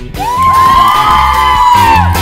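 A group of people cheering with a long, high, held whoop that rises at the start and is sustained until near the end, over rock music with a steady beat.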